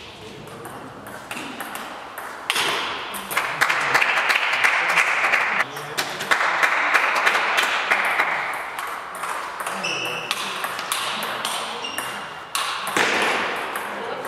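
Table tennis rally: the celluloid ball clicking off the bats and the table in quick succession, a string of sharp ticks.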